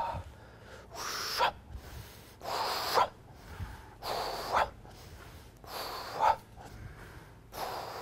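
A man's audible, rhythmic breaths, five of them about a second and a half apart, paced with a slow breathing-and-movement exercise.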